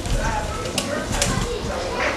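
Indistinct voices talking in the background, with two sharp clicks about a second in.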